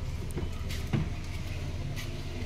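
Hyundai i20 hatchback idling with a steady low hum. About a second in, a sharp click from a door latch as a car door is opened.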